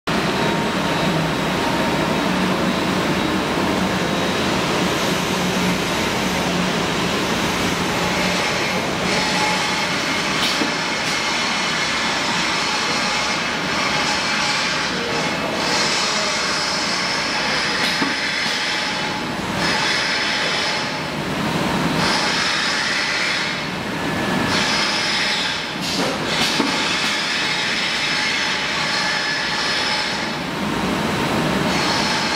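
Shrink-wrap packaging machines (an L-type corner film sealer with its shrink tunnel) running with a steady mechanical whir. From a little way in, higher hissing swells come every couple of seconds, with a few sharp clicks.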